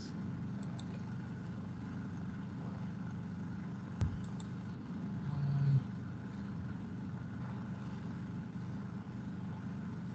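Steady low hum of room background noise picked up by an open video-call microphone. A single sharp click comes about four seconds in, and a brief louder low sound rises and cuts off a little after five seconds.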